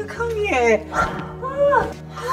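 Women's excited, wordless vocalising: several rising-and-falling squeals and laughing exclamations as they greet and hug, over steady background music.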